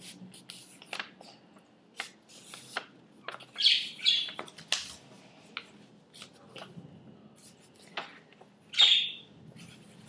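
Pet budgerigars chirping and squawking in short calls, loudest about four seconds in and again near nine seconds, with paper rustling as a sheet is folded.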